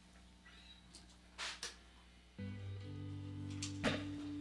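Quiet studio room tone with a brief soft noise, then about two and a half seconds in the band's opening chord starts and holds as a steady low sustained sound, with a second note joining a moment later. A short sharp click comes near the end.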